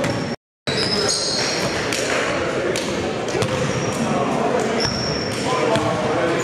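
Basketball game sounds in a large echoing gym: a basketball bouncing on the hardwood court, short high sneaker squeaks and indistinct players' voices. The sound cuts out completely for about a quarter second, about half a second in.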